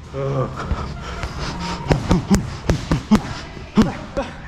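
Boxing gloves striking focus mitts in quick combinations, about eight sharp pops bunched in twos and threes from about a second in, most with a short grunted exhale from the puncher.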